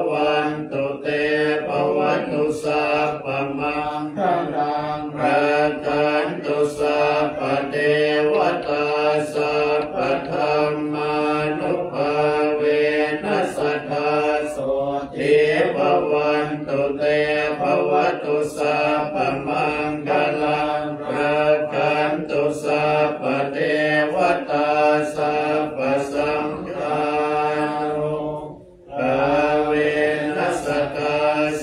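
Group of Thai Buddhist monks chanting Pali verses together in a steady, drawn-out recitation, with a brief break near the end before the chant picks up again.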